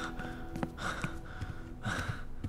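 A man breathing heavily in several loud panting breaths, winded from carrying a person on his back.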